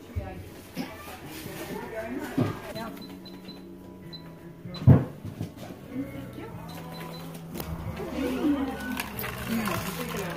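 Checkout-counter sounds: low voices with background music, the clicks and short high beeps of a cash register being rung up, and one sharp knock about five seconds in.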